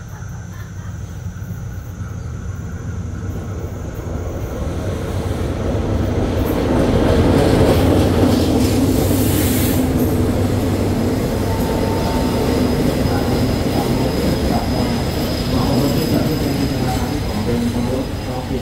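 A diesel-hauled passenger train arriving along the platform: its rumble grows steadily louder, peaks as the locomotive comes by about seven to ten seconds in, then the coaches keep rolling past with steady wheel-on-rail noise and a thin, faint high squeal.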